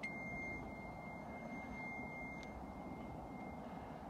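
A single steady high-pitched electronic beep that starts suddenly, holds for about two and a half seconds, stops with a click and trails off faintly for about another second. Under it runs a steady low rumble of wind and road noise.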